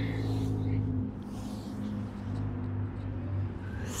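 Low steady hum of a motor vehicle's engine, dropping in level after about a second and then lingering faintly, with a soft breathy hiss about a second and a half in.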